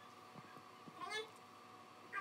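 A faint steady high hum, with one short pitched call that glides in pitch about a second in.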